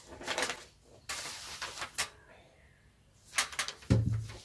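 Handling noises at a table: brief rustling and a few light clicks and knocks as a stemmed tasting glass is drunk from and set back down and a sheet of paper is handled.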